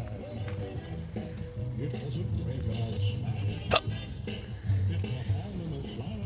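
Indistinct voices and faint music, with one sharp click a little under four seconds in.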